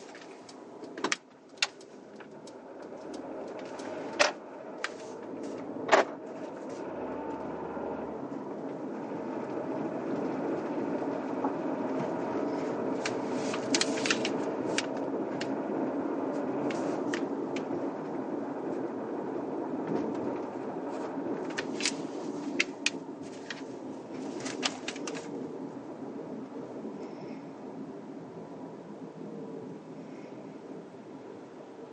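Inside an automatic Mercedes-Benz car pulling away from the kerb, with engine and road noise building as it speeds up and easing again as it slows near the end. Sharp clicks come now and then, singly in the first few seconds and in clusters later on.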